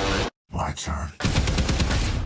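Film-trailer soundtrack: a sudden cut to silence, a short spoken line, then rapid automatic gunfire in quick, evenly spaced shots over the last second.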